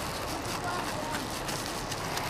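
Steady outdoor background noise, a low rumble under an even hiss, with no distinct event.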